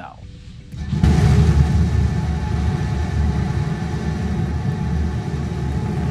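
SpaceX Starship SN15's three Raptor rocket engines firing at liftoff: a deep rumble that sets in suddenly about a second in and holds steady.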